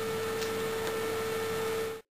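Steady electrical hum with one strong tone and background hiss, with two faint clicks about half a second and a second in; it cuts off suddenly into silence at the very end.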